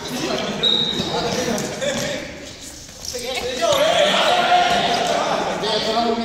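A group of students calling and chattering over one another in an echoing sports hall, with the thuds of feet on the floor. The voices dip briefly a little before halfway, then come back louder.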